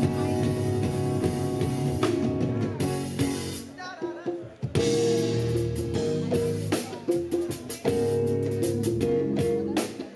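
Live band playing the opening of a song on drum kit, bass guitar and keyboards, with congas. The music drops back briefly about four seconds in, then comes in fuller with steady drum strokes.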